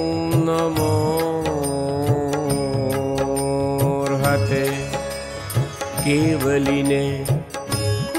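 Indian devotional music for a Jain hymn: long-held melodic notes with a slight waver over a steady drone, with plucked strings striking throughout.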